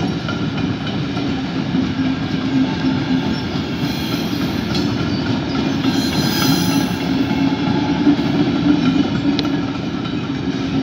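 Covered freight wagons of a mixed freight train rolling past: a steady rumble of steel wheels on the rails, with a faint high squeal from the wheels about six seconds in.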